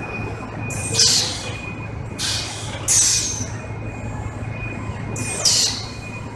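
Gypsum-bag palletizing line with an ABB IRB 460 robot running: a steady low machine hum, broken by three short hissing bursts, about a second in, around the middle, and near the end.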